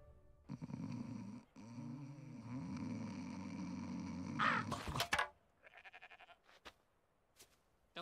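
Cartoon man snoring in long, drawn breaths, with a brief break about a second and a half in. A louder, sharp sound comes around four and a half seconds, followed by a quick run of faint taps and a few scattered clicks.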